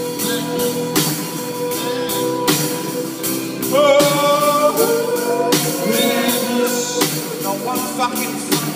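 Live band playing a rock ballad: acoustic and electric guitars with a drum kit keeping a steady beat. A man's voice comes in about four seconds in, singing long held notes.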